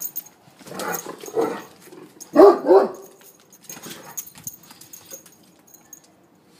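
Great Dane barking: a few short vocal sounds, the loudest two barks in quick succession about two and a half seconds in.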